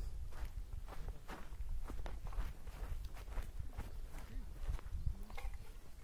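Footsteps of someone walking through grass: irregular soft steps, about two or three a second, over a low rumble of handling or wind on the microphone.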